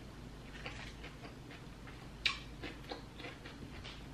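Faint crackling crunches of a tortilla chip being bitten and chewed, a series of small crisp clicks with one sharper crunch about two seconds in.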